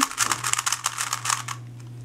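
Gans 356 3x3 speedcube being turned rapidly by hand: a fast run of light plastic clicks and clacks from its turning layers, which fades out about one and a half seconds in. The cube is very quiet to turn compared to the Moyu TangLong.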